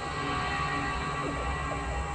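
Background music: a steady, low, sustained drone of held tones.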